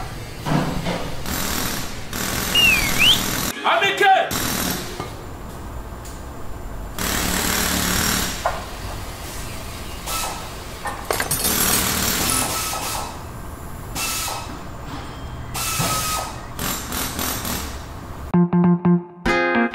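Workshop noise: irregular bursts of power-tool and metalworking noise, with people's voices mixed in.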